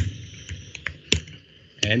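Typing on a computer keyboard: about five separate key taps, unevenly spaced, the loudest a little over a second in.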